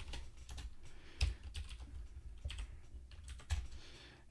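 Typing on a computer keyboard: an uneven run of keystroke clicks, a few louder than the rest.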